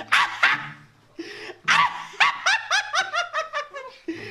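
A person laughing: two loud bursts right at the start, then a quick run of short laughs that fall steadily in pitch.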